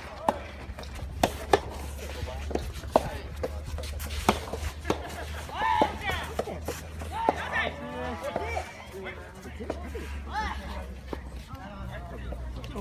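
Soft tennis rally: a string of sharp pops as the rubber ball is struck by rackets and bounces on the court. Players and onlookers call out in short shouts around the middle of the rally and again near the end.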